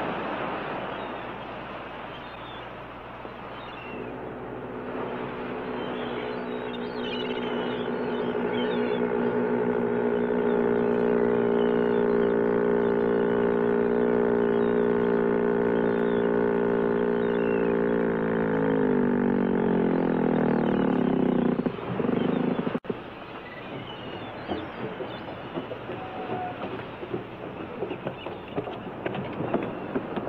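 A motorboat engine runs steadily at a constant pitch, then slows down, its pitch falling over a few seconds before it cuts off suddenly. A lower, irregular noise follows.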